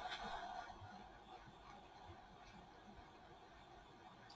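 Faint, steady hiss of a butane torch lighter's flame held to a candle to melt the wax.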